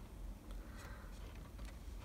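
Faint handling of a plastic model railway coach: a few light ticks as fingers touch and take hold of it, over low room tone.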